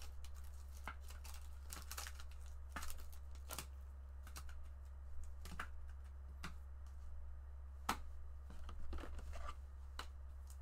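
Foil wrapper of a Bowman baseball card pack torn open and crinkled, then the cards handled and slid against each other, giving scattered sharp crackles and clicks over a steady low hum.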